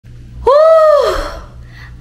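A woman's single high vocal exclamation, about a second long, rising then falling in pitch and trailing off into breath. A low steady hum runs underneath.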